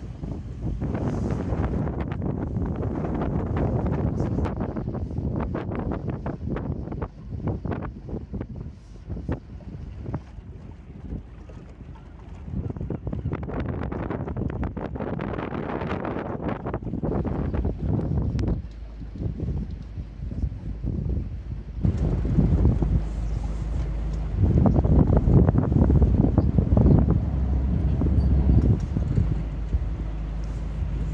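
Gusting wind buffeting the microphone over the running engine of a small passenger ferry. About two-thirds of the way through, the engine gets louder and its low hum steadier as the ferry comes in to land on the beach.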